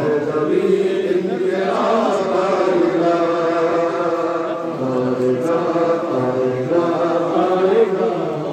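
Men's voices chanting a noha, a Shia mourning lament, together in long drawn-out notes.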